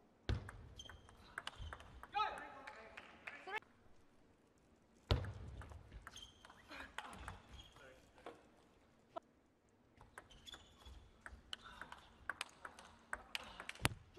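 A celluloid-style table tennis ball struck by rubber-faced paddles and bouncing on the table through fast rallies, making a string of sharp clicks and pings with a few louder hits.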